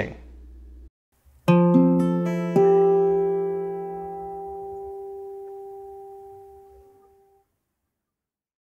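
A short acoustic guitar phrase: a few quick plucked notes about a second and a half in, landing on a chord that rings and slowly fades away over about five seconds.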